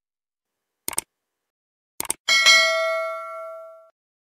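Subscribe-button animation sound effects: two short clicks, then a bright bell ding about two and a half seconds in that rings out and fades over about a second and a half.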